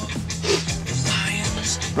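Music playing from a phone over Bluetooth through a Retrosound Hermosa car radio, coming through cleanly: the radio's Bluetooth is working.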